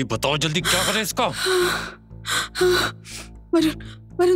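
A woman's rapid, panicked gasping breaths, one about every half second, over a tense dramatic music score.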